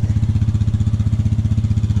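ATV engine idling steadily, with an even, low pulsing hum.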